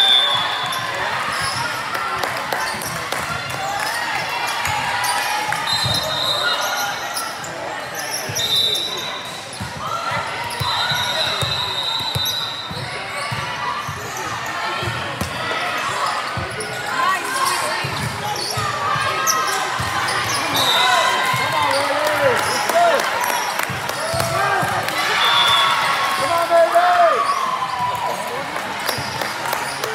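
Indistinct chatter and calls of players and spectators echoing in a large gymnasium, with volleyballs bouncing on the court floor. Several short, shrill referee whistle blasts sound through it, one shortly before the serve near the end.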